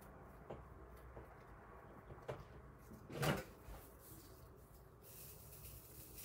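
Faint handling noises of hands working over a craft piece on a tabletop: a few soft clicks and knocks, the loudest about three seconds in.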